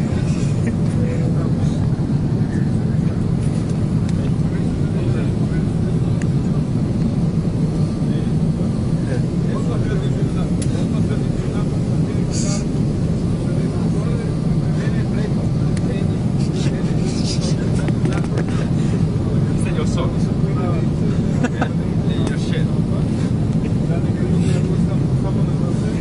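Steady low drone of an airplane heard from inside the cabin, even and unbroken throughout, with faint scattered clicks.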